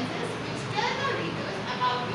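Children's voices chattering and calling, indistinct, with no clear words.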